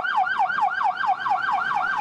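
SAMU ambulance siren in a fast yelp, its pitch sweeping up and down about six times a second in an even, continuous cycle.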